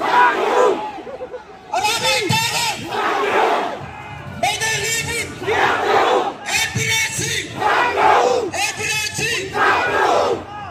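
A large crowd shouting slogans in unison, one shouted phrase about every second.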